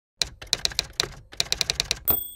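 Typewriter keys striking in two quick runs of clicks, about seven or eight keystrokes each, with a short pause between them about a second in. This is a typing sound effect for typed-out text.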